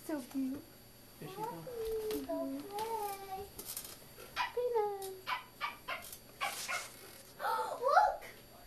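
Quiet, indistinct talking in a high voice, in short sing-song phrases that rise and fall, with a louder phrase near the end.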